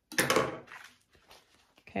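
A short, loud burst of rustling as a stiff, interfaced fabric panel is picked up and flipped over, followed by a few fainter rustles as it is laid down.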